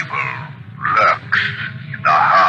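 A man laughing in short, choppy bursts: the Shadow's trademark sinister laugh from the radio show's opening.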